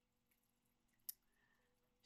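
Near silence: room tone, with one brief, sharp click about halfway through.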